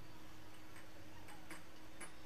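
A handful of light, irregular clicks and taps from rolling out flatbread dough on a board, over a faint steady hum.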